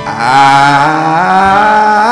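A man's voice singing a gospel song into a handheld microphone, holding one long note that climbs in pitch by steps with a wavering vibrato. It breaks off just after the end.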